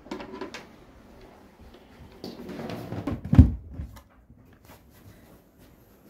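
Handling knocks from a wood-grain cable storage box: a few light knocks at the start, then scraping and a loud thump about three and a half seconds in as it is set down on the floor.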